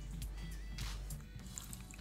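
Soft background music, with the wet squelching of a spatula stirring chicken pieces in a thick yoghurt marinade.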